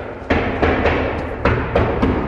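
A quick, uneven run of about six heavy, drum-like thumps.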